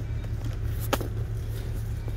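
Steady low hum of indoor shop background noise, with one short sharp click about halfway through.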